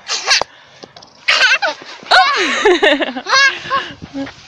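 A toddler's voice: several short wordless squeals and shouts, high-pitched and swooping up and down, the longest one around the middle.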